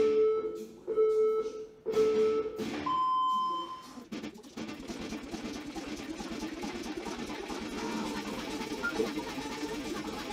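Countdown beeps: three short beeps of one pitch about a second apart, then a longer, higher beep, like a race-start or interval-timer signal. After about four seconds, quieter background music comes in.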